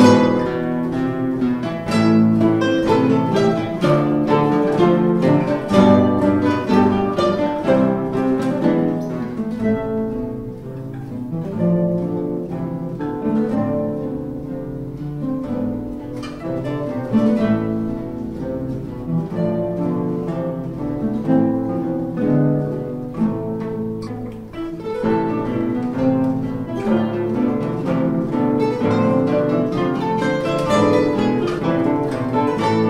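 Ensemble of nine nylon-string classical guitars playing a prelude together, a dense stream of plucked notes. The playing grows quieter through the middle and fuller again near the end.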